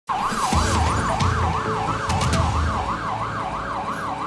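Emergency-vehicle siren in a fast yelp, its pitch sweeping up and down about three times a second, over a low engine rumble.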